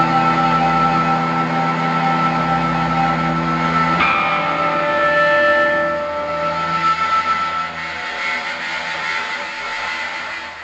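A live band playing held, ringing chords on electric guitar and keyboard. About four seconds in the chord changes sharply, then long single notes ring on and the music grows quieter toward the end.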